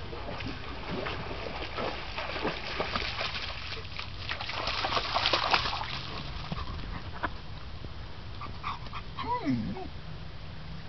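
Young German shepherd splashing through shallow creek water, with many short splashes that are loudest about halfway through. A brief falling whine comes near the end.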